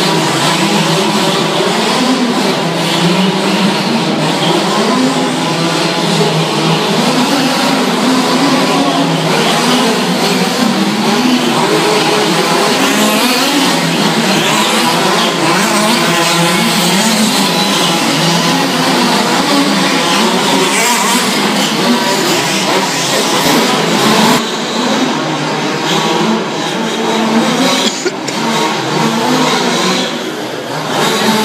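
Several large-scale RC cars' Zenoah petrol two-stroke engines running together in a race, each revving up and down so their pitches overlap and wander, echoing in a large hall.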